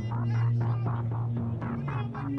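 Background music with a sustained low bass note, a few higher held notes, and a quick rhythmic pulse over it.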